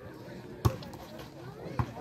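A volleyball struck twice by hand, two sharp slaps about a second apart.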